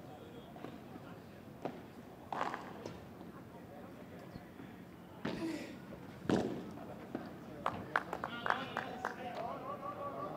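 A padel rally: sharp pops of the ball struck by padel rackets and bouncing off the court and glass walls, irregularly spaced and coming quicker in the last few seconds. Voices are heard near the end.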